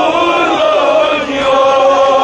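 Men's voices chanting a Kashmiri noha, a Shia mourning lament, in long held notes with several voices layered together.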